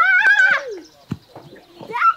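A girl's high-pitched, wavering squeal of delight, loud for about the first half-second, then a few soft knocks and another excited cry right at the end.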